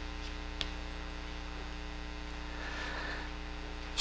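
Steady electrical mains hum: a low, even buzz with a ladder of overtones, with a faint click about half a second in.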